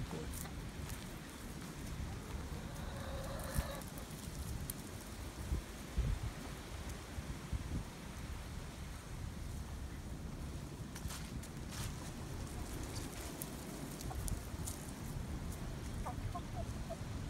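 Wind buffeting the phone's microphone, a steady low rumble, with a few faint clicks and rustles.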